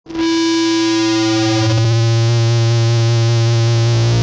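Electronic music: a held synthesizer chord over a steady bass tone, starting sharply at the very beginning.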